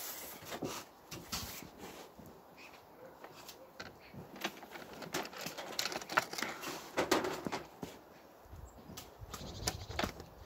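Metal chain clinking and rattling as it is laid across a sheet-metal hive roof, with scattered light knocks and scrapes.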